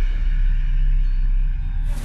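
A loud, steady deep rumble with no speech: a dramatic low drone from the show's edited soundtrack. It ends abruptly just before the end.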